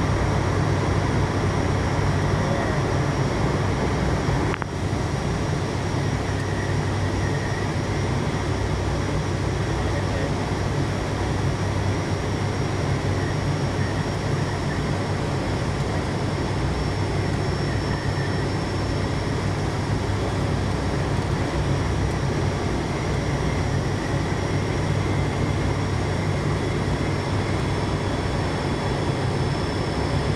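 Steady cockpit noise of an ATR 72-600 on final approach: the low hum of its twin Pratt & Whitney PW127-series turboprop engines and propellers under a constant rush of airflow. There is a brief dip in level about four and a half seconds in.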